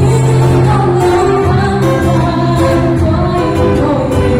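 A live band playing a song with singing over acoustic guitar and a steady band backing, the sound filling a large hall.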